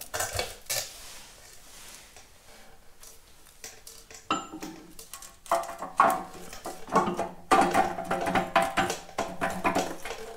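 Steel bearing cage and shims clinking against the splined bevel shaft and the transmission case as the cage is slid back over the shaft and seated by hand, after a 0.005-inch shim has been taken out to raise the bearing preload. A few clinks at first, a quieter spell, then a busy run of metal-on-metal clinks with a short ring from about four seconds in.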